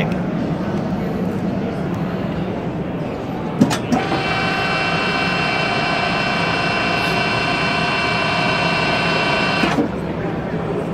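Two sharp clicks about three and a half seconds in, then the 3 HP all-electric drive of a BMT BM 70A pipe and tube bender whines steadily for about six seconds as the bend die swings a chrome tube round to 92 degrees, set past 90 to allow for springback. The whine cuts off suddenly near the end.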